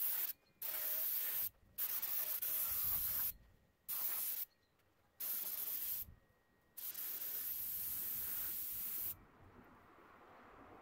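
Compressed-air gravity-feed paint spray gun spraying top coat in about six trigger-pull bursts of hiss, with short pauses between them. The last burst is the longest and stops about nine seconds in.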